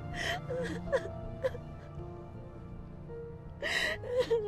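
A young woman sobbing and whimpering in short wavering cries, with sharp gasping breaths near the start and just before the end, over sustained background music.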